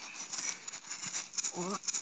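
Faint rustling and crackle close to the microphone with no voice for about a second and a half, then a man's voice starts speaking near the end.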